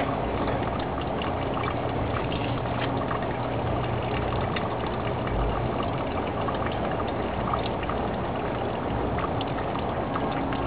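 A steady low motor hum under a constant rushing background noise, with a few faint scattered ticks.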